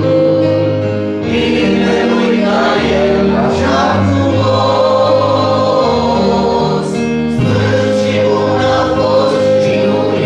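A congregation singing a worship song together over instrumental accompaniment with sustained bass notes.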